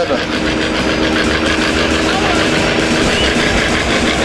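A pulling tractor's diesel engine running steadily at idle.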